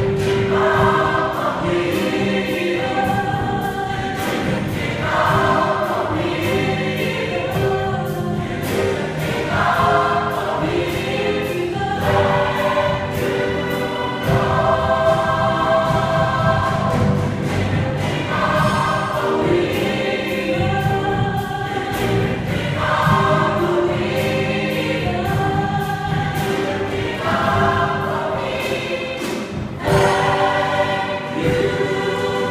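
Large mixed gospel choir singing in phrases over an accompaniment, with a steady beat throughout.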